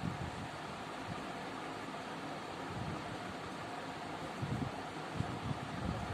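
Steady background hiss of room noise, with a few faint low bumps in the second half.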